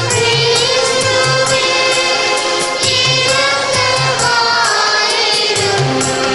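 Choir singing a hymn with long held notes over instrumental accompaniment, a stepping bass line and a steady percussion beat.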